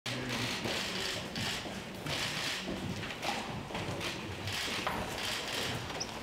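Press photographers' camera shutters clicking in repeated quick bursts.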